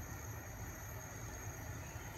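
Faint, steady hiss with a low hum, with no distinct events.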